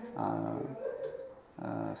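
A man's voice in two short, drawn-out sounds between phrases, the first about half a second long and the second shorter near the end, with a brief pause between them.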